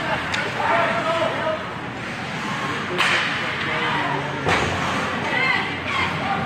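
Sharp cracks of hockey sticks and puck during ice hockey play, the loudest about three seconds in and another about a second and a half later, over rink noise and scattered crowd voices.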